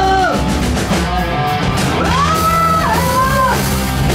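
Live rock band playing: a male singer sings long held notes over electric guitar and drum kit, one note sliding up about halfway through and held for over a second.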